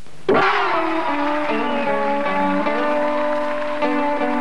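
Guitar music that starts suddenly about a third of a second in with a struck chord, then held, ringing notes that shift in pitch every second or so.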